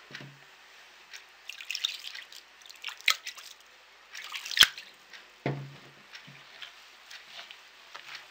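Water sprinkled by hand from a glass, dripping and pattering onto couscous grains in an earthenware dish, with light rustling of the grains. This is the couscous being dampened between steamings. Two sharp clicks come about three and four and a half seconds in, and a soft thud a second later.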